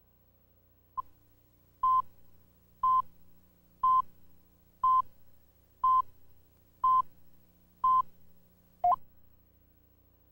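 Countdown leader beeps on a videotape: a short blip, then a steady mid-pitched beep once a second, eight times, each a fraction of a second long. The last beep is cut shorter and dips in pitch.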